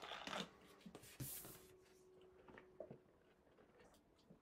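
Faint rustling and light taps of oracle cards being handled, with a card picked up off the tabletop. The sounds come as a few brief scrapes in the first second and a half, then smaller ticks.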